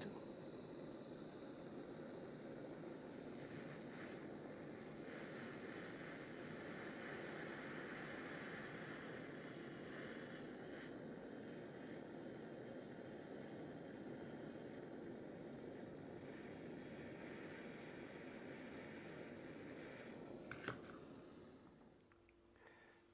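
Small butane gas torch hissing steadily as its flame heats a brass joint to flow the solder. The hiss dies away near the end, with one brief click.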